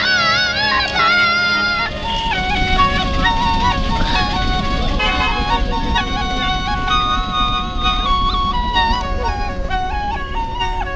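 A boy sings with vibrato over a harmonium drone for about two seconds. Then a Rajasthani double flute plays: one pipe holds a steady drone note while the other plays a melody that steps up and down.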